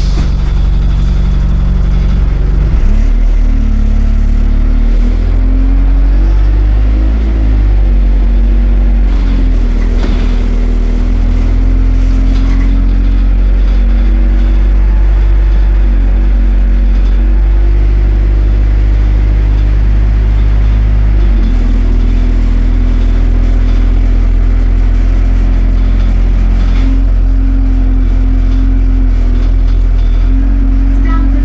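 Diesel engine of a single-deck London bus, heard from inside the passenger saloon, pulling away about two to three seconds in, its note climbing in steps. It then runs steadily, and the note drops about twenty-one seconds in.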